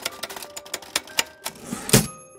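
Typewriter sound effect: keys clacking in a quick, uneven run as a title is typed out letter by letter, ending with a louder swelling strike just before the end.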